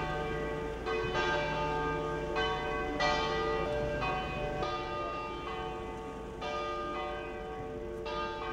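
Church bells ringing, a new bell struck about once a second, each note ringing on under the next.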